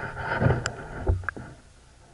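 Muffled sound picked up by a submerged camera: a rushing, watery noise with a few knocks and clicks, falling away to a faint hiss about a second and a half in.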